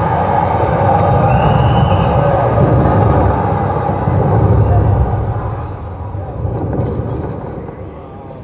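A dense low rumble, fading away over the last three seconds.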